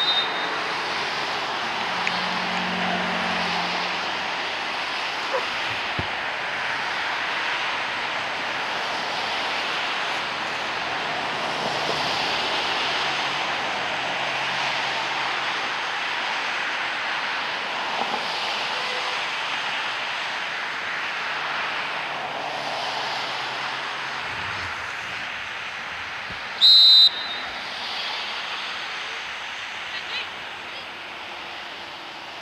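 Steady outdoor background noise, then one short referee's whistle blast a few seconds before the end, the loudest sound, signalling the restart of play.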